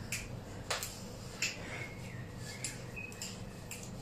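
Light footfalls on a laminate floor from jogging in place, heard as about six scattered soft taps and clicks over faint room noise.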